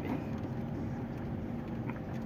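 A car's engine and tyre noise heard from inside the cabin while driving slowly, a steady low rumble.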